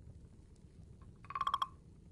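Wooden frog percussion instrument: a stick scraped once along its ridged back, giving one short rasping croak, a quick run of clicks over a ringing wooden tone, about a second and a quarter in. A few faint light ticks come before it.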